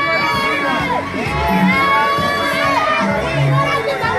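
A crowd of many voices shouting and chanting at once, loud and continuous.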